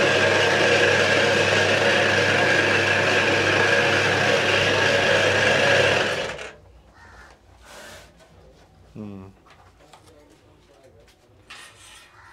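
Motor-driven chowmein noodle cutting machine running, a loud, steady mechanical whir over a low hum as the dough sheet is cut into strands. It cuts off abruptly about six seconds in, leaving only faint sounds.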